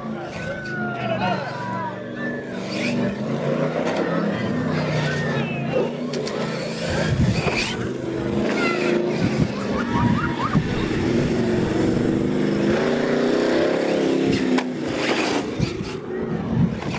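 A radio-controlled monster truck's motor revving up and down, its pitch rising and falling with the throttle as the truck is driven hard on gravel. Steady crowd chatter runs underneath.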